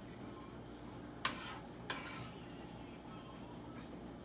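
A cooking utensil knocks and scrapes against a nonstick frying pan twice, once a little after a second in and again about two seconds in, as butter and garlic are pushed around the pan.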